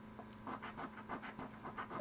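A quarter's edge scraping the coating off a paper lottery scratch-off ticket: a quick run of short, faint scratching strokes, beginning about half a second in.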